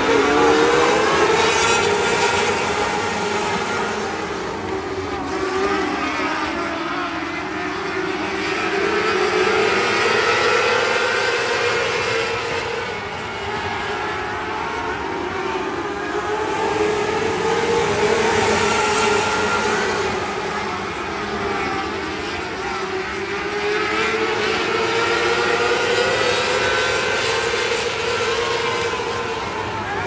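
A pack of 600 micro sprint cars with 600cc motorcycle engines circling the dirt oval together. Their engine note swells and fades about every seven to eight seconds as the field goes round.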